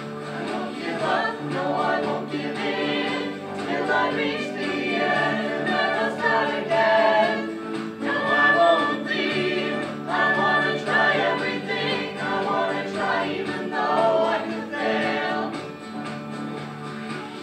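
A mixed choir of men's and women's voices singing in harmony, with held chords that swell and ease phrase by phrase.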